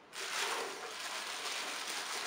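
Clear plastic bag crinkling steadily as it is picked up and handled, starting suddenly just after the beginning.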